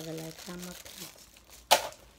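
A few soft spoken syllables, then a single brief, sharp crinkle of a plastic shopping bag near the end as a hand reaches into it.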